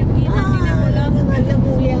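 Steady low road and engine rumble inside the cabin of a Maruti Suzuki Ertiga on the move, with voices talking over it.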